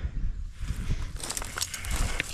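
Rustling and crackling of grass and leaves underfoot and in the hands, busiest in the second half, over a low rumble on the microphone.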